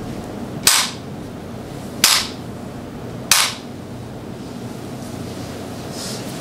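Three sharp wooden knocks, about a second and a half apart, each with a short ring, struck on a Buddhist temple percussion instrument as a signal for the congregation to join palms and bow.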